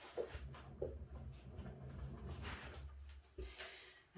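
Quiet room tone: a low steady hum with a faint hiss, and a soft rise in the hiss about two and a half seconds in.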